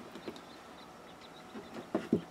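Faint handling sounds of kite string being wound and pulled tight around a gathered T-shirt: soft rustling with a few small ticks, one a little louder near the end.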